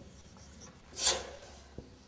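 Marker writing on a whiteboard: light taps and faint strokes, with one louder scraping stroke about a second in.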